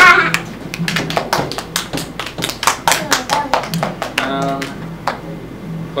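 A quick, irregular series of sharp taps, with a short voice sounding about four seconds in.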